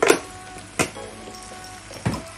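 Background music with held notes, and two short sharp knocks, one at the start and one just under a second in.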